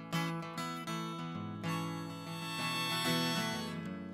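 Acoustic guitar strummed in steady chords, with a Hohner harmonica on a neck rack coming in about a second and a half in and holding a long chord over the guitar.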